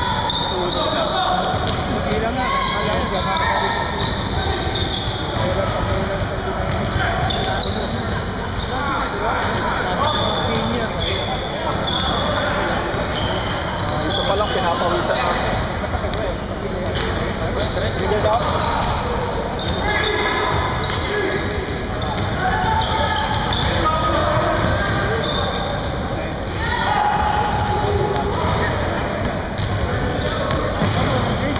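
Basketball bouncing on a hardwood gym floor during play, with players' voices echoing through a large hall.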